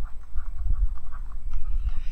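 Low, uneven rumbling noise close on the microphone, with faint light taps of a stylus on a drawing tablet.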